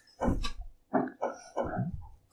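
A man's voice making three short, low vocal sounds that are not words.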